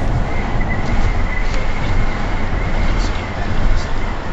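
Road and engine noise inside a moving car's cabin: a steady low rumble with an even hiss over it.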